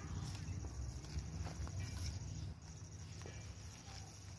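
Hands firming loose, dry soil around a newly planted sapling: soft, irregular scrapes and pats of earth, over a low rumble.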